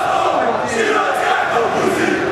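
Large crowd of football supporters, mostly men, shouting together, many voices overlapping in a loud, continuous din.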